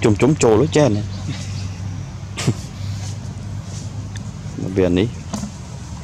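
A steady low motor hum runs underneath throughout. Short bursts of voice come in the first second and again about five seconds in, with a single sharp click midway.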